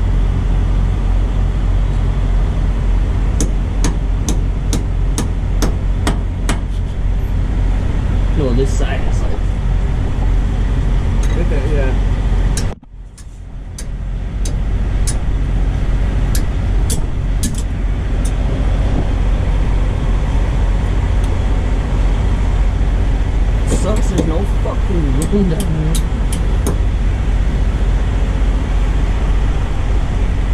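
A diesel truck engine idling steadily under sharp metallic clinks and taps from work on a broken driveshaft. The taps come in runs through the first half and again from about twenty-four seconds in, and the sound dips briefly about thirteen seconds in.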